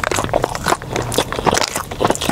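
Close-miked crunchy chewing of a mouthful of Jollibee fried chicken sandwich: a quick, irregular run of crisp crackles and clicks.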